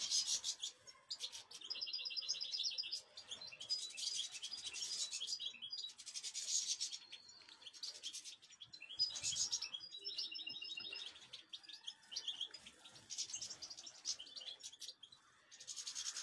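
European goldfinches twittering, in repeated bursts of quick, high trills with short pauses between.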